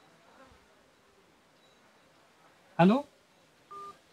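A short electronic beep from a mobile phone near the end, a steady two-note tone lasting about a fifth of a second. About three seconds in, a brief loud voice sound rises in pitch; otherwise it is quiet.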